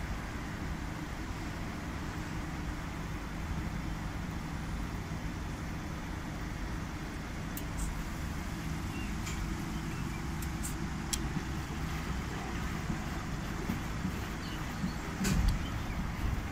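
Commercial front-loading washing machine tumbling a load of bedding in water on its wash cycle: a steady low rumble and motor hum as the drum turns. There are a few light clicks from about halfway through and a louder thump near the end.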